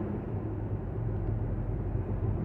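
Steady low rumble and hum of a vehicle heard from inside, like a car's engine running with the cabin closed.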